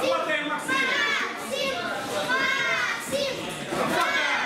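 High-pitched children's voices shouting and calling out, several separate shouts one after another.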